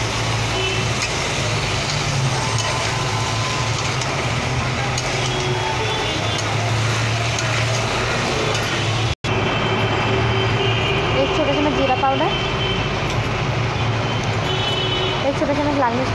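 Potato and pointed gourd pieces frying in oil in a non-stick kadhai, a steady sizzle with a metal spatula stirring, over a low steady hum. The sound cuts out for an instant about nine seconds in.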